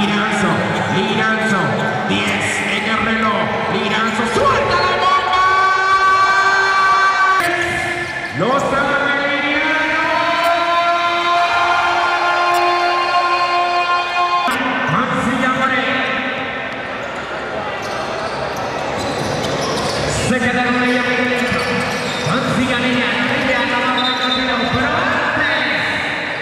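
Basketball bouncing on a hardwood gym floor during play, under constant crowd noise in a large hall. Several long held tones, each lasting a few seconds, run over it.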